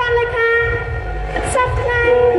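A woman singing long, held notes of a Lakhon Basak opera song into a microphone over a loudspeaker system, sliding to a new pitch about midway through.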